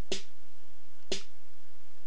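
A short, sharp drum-machine hit, like a snare or clap sample, repeating about once a second, two hits in all, from a drum pattern looping in Reason's Redrum.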